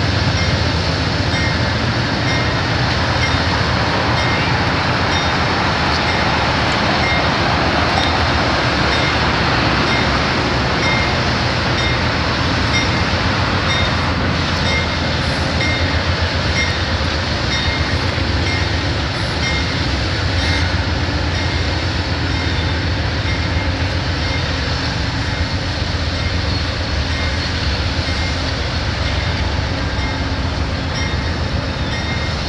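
Amtrak GE Genesis diesel-electric locomotives of the California Zephyr running, a loud, steady engine sound.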